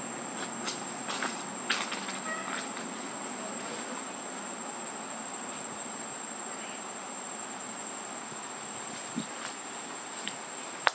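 Insects calling in one steady high-pitched whine over a background hiss, with a few short clicks in the first few seconds.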